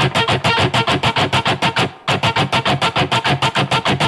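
Distorted electric guitar, a Les Paul-style solid body tuned a whole step down, strummed in fast, even power-chord strokes of about seven or eight a second, with a brief break about two seconds in. It is the intro strumming pattern of the song, played by ear.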